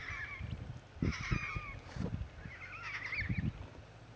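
Pink cockatoo (Major Mitchell's cockatoo) giving short bursts of wavering calls, three times about a second or more apart, over some low thumps.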